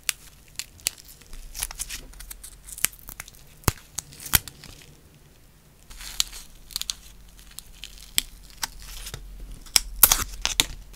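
A lint-free nail wipe rubbed and pinched over a fingernail: soft crinkling rustles broken by many sharp clicks of fingernails against the nail.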